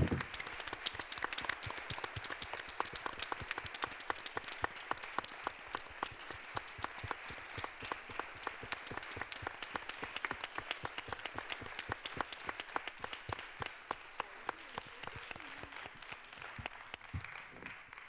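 Audience and panelists applauding: a dense, steady patter of many hands clapping that thins out and stops near the end.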